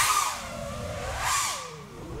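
Whine of an FPV quadcopter's NewBeeDrone Smoov 2306 1750KV brushless motors in flight, the pitch sliding down, rising again about a second in, then falling near the end as the throttle changes, with a rush of air.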